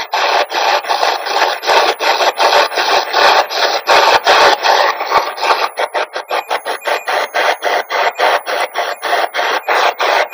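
SB-11 Spirit Box sweeping through radio frequencies: loud static chopped into short bursts, about four a second at first, quickening to about six a second from roughly halfway through.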